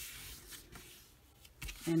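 A sheet of cardstock sliding and rustling against paper on a tabletop, fading after about a second, then a soft knock near the end.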